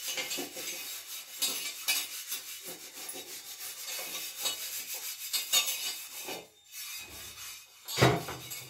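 Dishes being scrubbed by hand at a kitchen sink: a quick, irregular run of rasping scrub strokes, with a short lull near the end.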